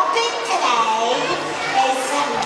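Voices with no clear words, children's voices among them.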